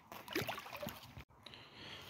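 Faint trickling and splashing of pond water, as netted Daphnia and water go into a bucket. The sound drops out abruptly for a moment a little past halfway.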